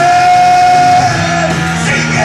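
Live rock band playing: a singer holds one long note for about a second over distorted electric guitars and drums, then the guitars carry on.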